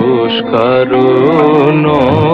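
Devotional song to the goddess Kali: a sung melody with wavering, ornamented notes over a sustained instrumental accompaniment.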